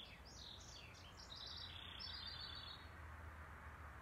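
A songbird singing faintly: a quick string of chirps and short trilled notes that ends about three seconds in. A faint steady low hum lies underneath.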